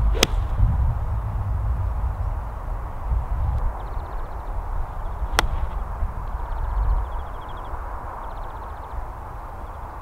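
Two golf shots struck with a Honma TW747 iron, each a single sharp click of club face on ball. The first comes just after the start and the second about five seconds later. Wind rumbles on the microphone throughout.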